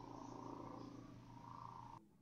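Near silence: a faint, steady background hum of room tone over the call's audio.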